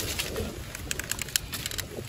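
A bird gives a low call about half a second in, over scattered light rustles and clicks of hands working through wet leaf litter and shallow water, with low wind rumble.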